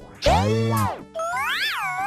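Cartoon comedy sound effects: a loud boing that bends up and then down about a quarter second in, followed by a wobbling tone that swoops up, falls, and starts to rise again near the end.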